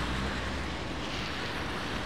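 Road traffic passing close on a rain-wet street: a continuous hiss of tyres on wet asphalt with a low engine rumble, strongest in the first second as a truck goes by, then cars.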